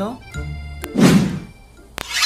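A single heavy thud about a second in, over quiet background music, with a sharp click just before it.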